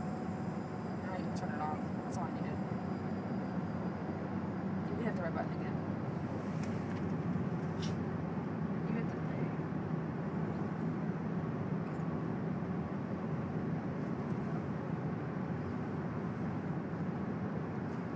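Steady road and engine noise of a car at highway speed, heard from inside the cabin.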